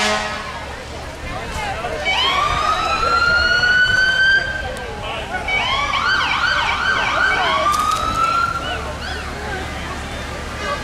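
Emergency-vehicle siren sounding: a long rising wail about two seconds in, a run of quick up-and-down yelps around the middle, then another rising wail near the end.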